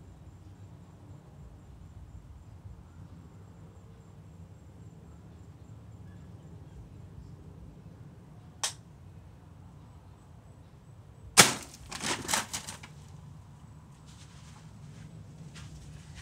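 Air rifle shot into a row of plastic water bottles: one sharp crack followed at once by about a second and a half of clattering strikes as the bottles are knocked over. A single short click comes about three seconds before the shot.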